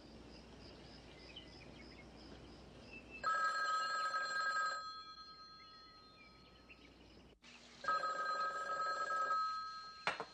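A telephone rings twice, each ring a trilling tone about a second and a half long, the two rings about three seconds apart, after a few seconds of faint ambience.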